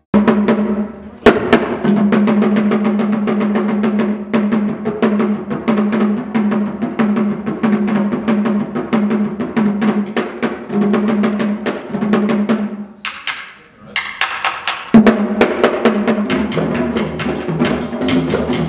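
A group of wooden hand drums playing a fast, dense rhythm together. About thirteen seconds in they break off briefly, then come back in loud.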